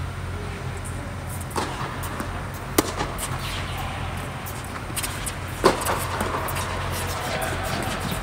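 Tennis balls struck by rackets and bouncing on an indoor court during a doubles rally: several sharp pops, the loudest about three and five and a half seconds in, over a steady low hum in the hall.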